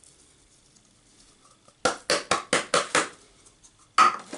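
A quick run of about seven sharp kitchen clicks or taps, starting about two seconds in, while spices are being added to minced meat in a food processor bowl. The room is nearly silent before them.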